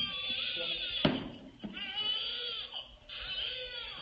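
A baby crying in three wavering wails. A single knock comes about a second in.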